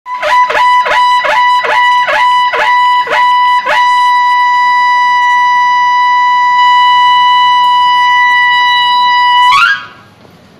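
Tutari, the long curved Maharashtrian ceremonial brass horn, blown loudly: it opens with about eight quick pulses roughly half a second apart over one held note, then sustains that single bright note and rises sharply in pitch just before cutting off near the end.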